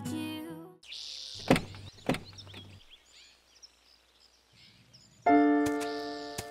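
Two car-door latch thunks about half a second apart as the doors of a black Mercedes-Benz sedan are opened, with faint bird chirps after them. Background music fades out at the start and comes back in with a held chord near the end.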